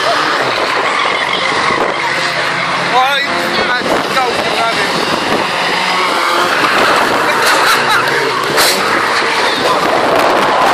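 Racing hatchback engines revving up and down as the cars lap the track, with tyres skidding on the corners.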